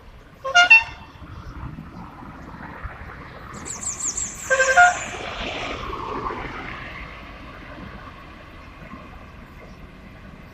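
Car horns tooting on a street: a short toot about half a second in, then a quick double toot near the five-second mark, over the steady noise of passing traffic. A brief high trill comes just before the second toot.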